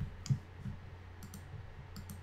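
A few faint, separate clicks of a computer mouse over a low steady hum.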